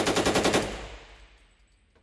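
A burst of fully automatic gunfire, about a dozen shots a second, stopping under a second in, with its echo dying away.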